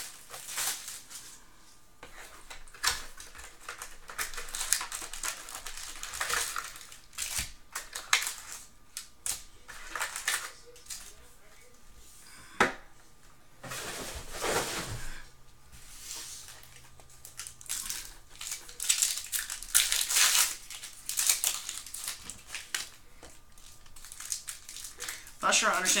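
Foil-wrapped trading card packs and their cardboard hobby box being handled: irregular crinkling and rustling with short clicks and taps as the packs are pulled out and stacked, with one sharper tap about halfway through.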